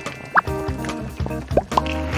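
Background music with three short, rising drip-like plops, one about a third of a second in and two close together near the end, as a chocolate egg on a skewer is dipped in a chocolate fountain.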